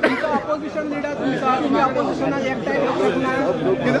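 Several men talking over one another at once: an argument in crosstalk, no single voice clear.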